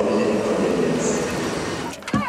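Railway station sound: a steady, echoing drone of trains and the station hall.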